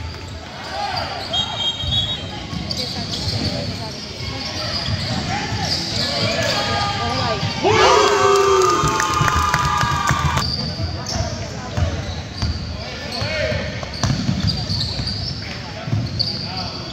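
Indoor basketball game sounds: a basketball bouncing on the court amid spectators' talk and calls echoing in the gym, with a louder burst of crowd shouting about eight seconds in that lasts two or three seconds.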